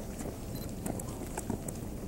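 Running footsteps of several runners on a paved path: a quick, irregular patter of shoe strikes, several a second, over a low outdoor rumble.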